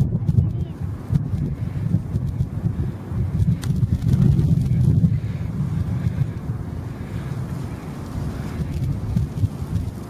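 Wind buffeting the camera's microphone: a gusting low rumble that swells around four to five seconds in.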